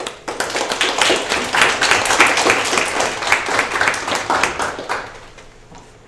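Audience applause that starts suddenly, carries on densely for about five seconds, then dies away.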